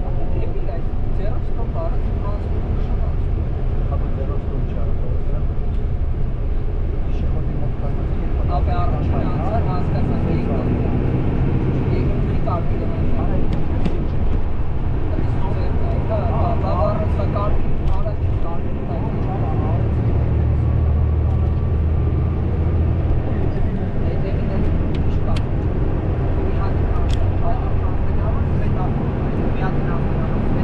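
Steady low road and engine rumble of a moving car, with indistinct voices at times, clearest about a third of the way in and again a little past the middle.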